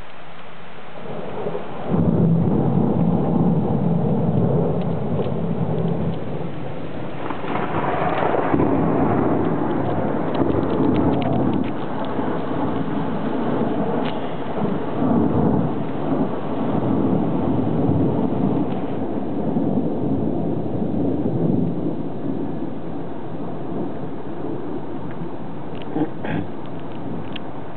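Thunder over heavy rain: the rain hisses steadily, then a rumble breaks in suddenly about two seconds in, swells again with a brighter peak around eight seconds, and keeps rolling in waves.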